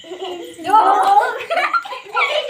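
A group of children laughing and giggling, loudest from about half a second in.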